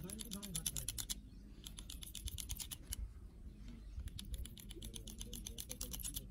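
Manual hand clippers snipping hair, a fast run of metal clicks at about ten a second as the handles are squeezed, in three bursts with short pauses between.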